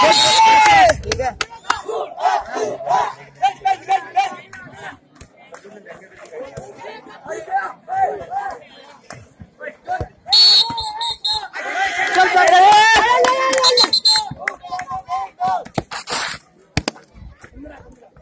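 Players and spectators shouting during a handball game, loudest at the start and again about twelve seconds in, with scattered sharp knocks throughout.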